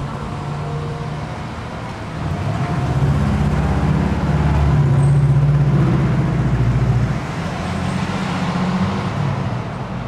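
Cars driving past on a small-town street, engine and tyre noise close by. The sound swells to its loudest about halfway through, dips briefly, then rises again as a pickup truck approaches near the end.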